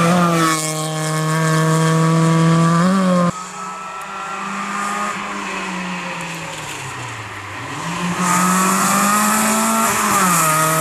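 Fiat 850 rally car's engine running hard at high revs on a stage. It holds a steady note, rises and cuts off abruptly about three seconds in. It is then heard further off, the revs dropping around seven seconds in and climbing again as the car comes closer and louder.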